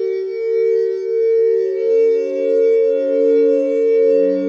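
Experimental electronic music: a drone of several held synthesizer tones, its loudness swelling and fading about once every 0.7 s. A higher tone joins a little before halfway, and a lower one comes in just after.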